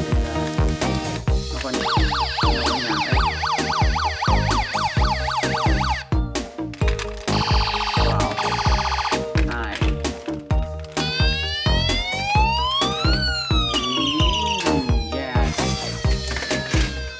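Electronic siren sounds from a toy ambulance: a fast warbling yelp a couple of seconds in, a steady buzzing tone around the middle, then a long rise and fall near the end. Background music with a steady beat plays under it.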